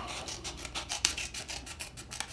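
Magazine paper cutouts rustling and scraping against one another as they are handled and shuffled, a quick, uneven run of small crisp rubs.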